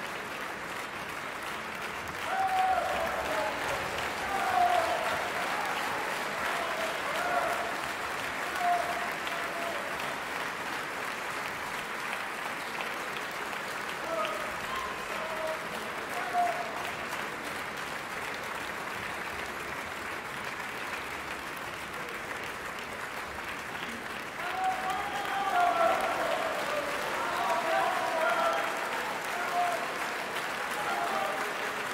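Theatre audience applauding steadily through a ballet curtain call. Shouted calls from the audience rise over the clapping at a few points, swelling again near the end.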